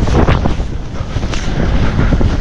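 Wind buffeting a body-mounted camera's microphone as skis plough fast through deep powder snow, an uneven low rumble with snow spraying onto the camera. It is loudest in the first second and eases a little after.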